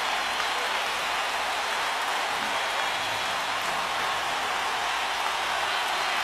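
Large audience applauding, a dense, steady wash of clapping.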